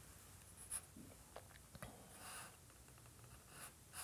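Faint scratching of a compressed charcoal stick on drawing paper: several short strokes, then a longer, softer stroke near the middle and another near the end.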